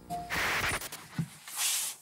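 Edited-in sound-effect transition: a brief beep, then two airy swooshes, the second higher than the first.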